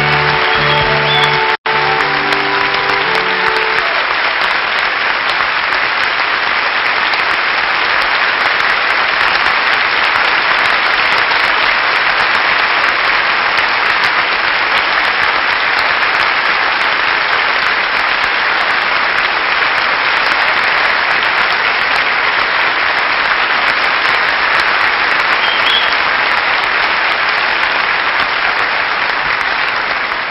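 Large audience applauding steadily and at length. Music plays under the applause for the first three seconds or so, with a brief cut-out about a second and a half in.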